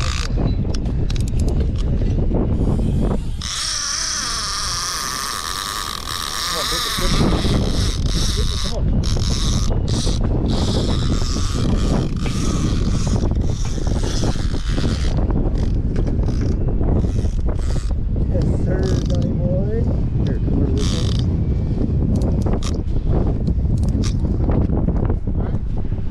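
Conventional fishing reel being cranked against a hooked kingfish, its gears ratcheting and clicking, with wind buffeting the microphone. About three seconds in, the sound changes to a higher-pitched stretch for several seconds before the cranking resumes.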